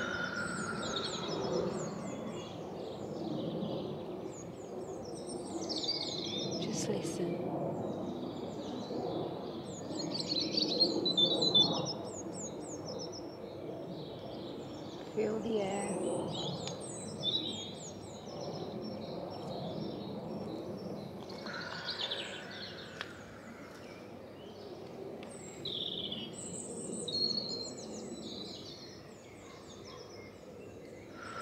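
Several birds singing and chirping over a steady low background rush of open countryside, busiest around ten seconds in. A sigh comes at the very start.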